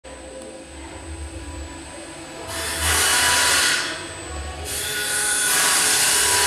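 A machine running with a dense whirring rush: it starts about two and a half seconds in, drops away for about a second, then comes back and keeps going. A faint low hum sits under the opening seconds.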